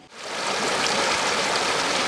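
Irrigation water gushing out of an outlet into an earthen ditch: a steady rushing that fades in just after the start.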